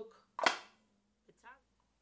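Magnetic wooden perfume box snapping shut: one sharp clack about half a second in, fading quickly.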